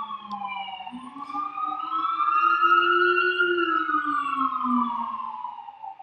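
An emergency vehicle siren in a slow wail. Its pitch falls for about a second, rises slowly to a peak about three seconds in, where it is loudest, then falls again.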